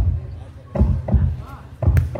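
Volleyball rally: several dull thuds and, just before the end, a sharp smack of the ball being struck, with a short shout of voices in between.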